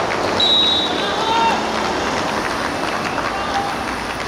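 A referee's whistle blown once, a short shrill blast about half a second in, over players' shouts and a steady outdoor background hubbub.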